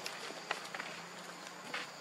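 Outdoor forest ambience: a steady hiss of background noise with a few brief clicks or snaps, one about half a second in and another near the end.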